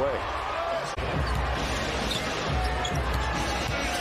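Basketball arena sound: steady crowd noise with a ball bouncing on the hardwood court and a few short squeaks. The sound breaks off abruptly about a second in, at an edit, then carries on in the same way.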